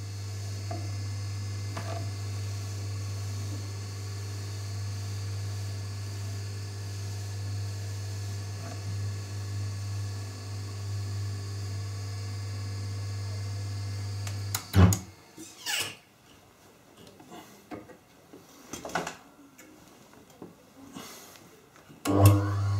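Red Wing bench polishing motor running with a steady low hum. It is switched off about fifteen seconds in with a sharp knock, followed by scattered light clicks and knocks as a buffing wheel is handled and fitted to the spindle. The motor starts again at the very end.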